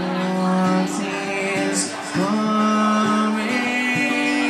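Live acoustic-electric duo: a man singing long held notes into a microphone over a strummed acoustic guitar and an electric guitar.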